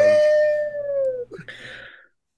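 A person's voice whooping "woo!" as one long call whose pitch eases slowly downward over about a second, followed by a brief breathy noise near the end.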